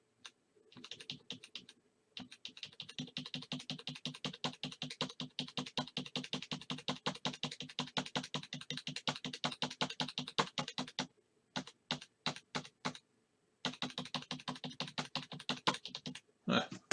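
A computer key tapped over and over, about six clicks a second, in long runs broken by short pauses, as a spreadsheet list is scrolled down.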